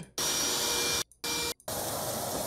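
Steady hiss of water spraying under pressure from a broken pipe under a sink, cut off three times by brief silent gaps where the playback skips.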